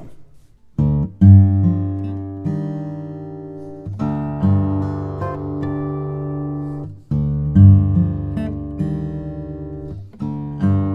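Maingard grand concert acoustic guitar with Brazilian rosewood back and sides and an Italian spruce top, fingerpicked in open G minor tuning (D G D G B♭ D). Deep bass notes are left to ring under a melodic theme. The playing begins about a second in, and after a brief break near seven seconds the phrase starts again with another strong bass note.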